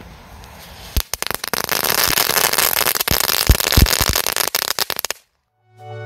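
A rolled-up flash whip firecracker (blixtband) going off: a dense run of crackling with several louder bangs, starting about a second in and lasting about four seconds before it cuts off suddenly. Music starts just before the end.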